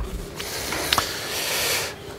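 Rustling handling noise with a few small clicks over a steady hiss.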